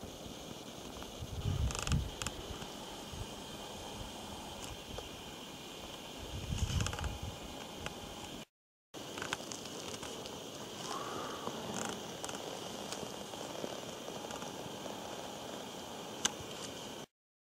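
Faint outdoor forest ambience with a steady hiss, broken by two short low rumbles, about two seconds in and again near seven seconds, and a few faint clicks. The sound drops out completely for about half a second just past the middle.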